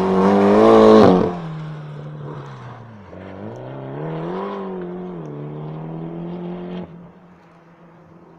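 Mitsubishi Lancer Evolution X rally car's turbocharged four-cylinder engine at high revs, passing close by and loudest about a second in. Its pitch then falls, climbs again about three to four seconds in as it revs up once more, and holds until the sound cuts off abruptly about seven seconds in.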